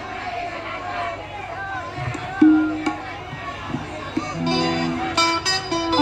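Live stage band sounding scattered notes between songs: a single held note about halfway through, a short chord, then sharp drum hits near the end, over faint crowd voices.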